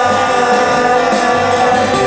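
Live band music from a rock band: acoustic guitar, electric bass guitar and drums, with long held notes over a bass line that changes every half second or so.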